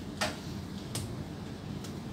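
Room tone with a steady low hum, broken by three short sharp clicks: the loudest a moment after the start, another about a second in, and a faint one near the end.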